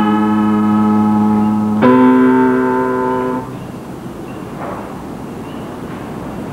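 Film score music: sustained keyboard chords held at a steady level, moving to a new chord about two seconds in and ending about three and a half seconds in, leaving a quieter background noise.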